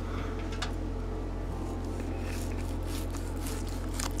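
Faint, soft cuts of a large knife slicing through a smoked turkey breast, over a steady low hum.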